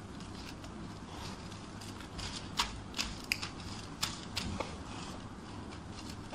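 Small scissors snipping magazine paper into little pieces: about half a dozen short, sharp snips, starting a little before the middle and spaced roughly a third to half a second apart.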